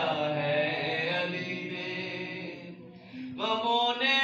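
A man chanting a devotional verse through a microphone and PA, holding long sustained notes. His voice fades and breaks off about three seconds in, then comes back strongly near the end.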